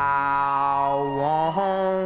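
A long held chanted note sung on one vowel, stepping up in pitch twice near the end, from a live blues band recording.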